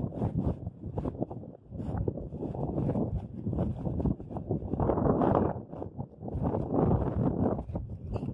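Wind buffeting the microphone in gusts, swelling twice in the second half, over river water washing against the rocks of the bank.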